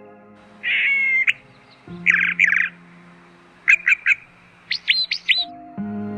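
Bird calling in four short bouts: a harsh buzzy call, then two more harsh calls, then three quick chirps, and near the end a run of short down-slurred chirps. Soft background music runs underneath.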